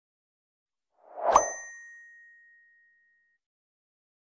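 Notification-bell sound effect from a subscribe-button animation: a short swell ending in a single bright ding about a second and a half in, its ringing tone fading out over about two seconds.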